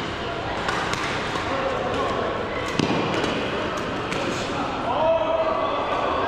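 Badminton rackets striking a shuttlecock in rallies, a string of sharp, irregular strikes, over distant chatter in a large sports hall.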